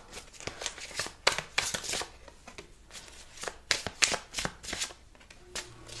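A deck of tarot cards being shuffled by hand: a quick, irregular string of card slaps and flicks.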